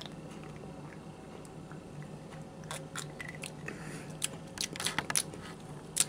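A person drinking a fizzy mixed soda drink over ice from a mug, close to the microphone: quiet sips and swallows, with a run of small irregular clicks in the second half.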